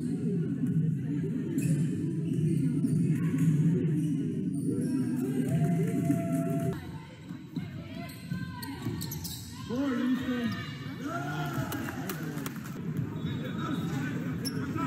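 Live game sound from indoor basketball: a ball bouncing on a hardwood court with players' and spectators' voices, echoing in a large gym. Music runs under the first half.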